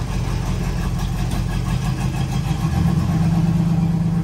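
1986 Oldsmobile Cutlass 442's V8 idling with a steady low rumble; about three seconds in, the engine note rises a little and holds as it takes a touch of throttle.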